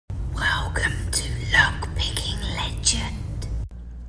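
A whispering voice over a low music bed; it cuts off suddenly just before the end.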